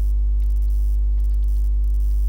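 Steady low electrical mains hum, with a strong fundamental near 50 Hz and a ladder of overtones, carried in the recording chain.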